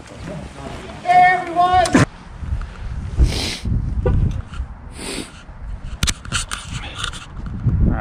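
A voice for about a second, then a steady low rumble of wind on the microphone and bicycle tyres on pavement as a gravel bike is ridden, with a few light clicks.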